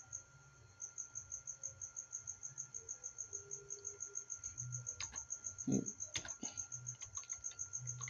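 A high, steady chirping, about seven short chirps a second, runs under a few computer keyboard keystrokes in the second half.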